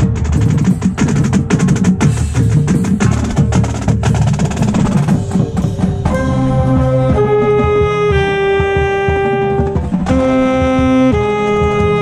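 Marching band playing. The first half is rapid, dense drum and percussion strikes; about halfway in, the winds enter with long held chords that shift every second or so.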